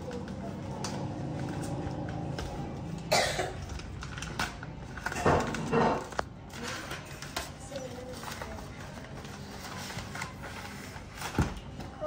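Gift-wrap and tissue paper crinkling and tearing in a few short bursts, about three seconds in, again around five to six seconds in, and near the end, as small hands unwrap a present.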